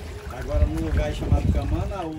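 Water sloshing and lapping around swimmers close to the microphone, with a steady low rumble and quiet voices talking.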